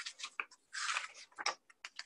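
A picture book being handled and opened, its paper pages and cover rustling and brushing in a string of short, irregular scrapes and soft clicks.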